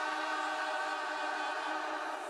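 Choir singing, holding one long chord in many voices.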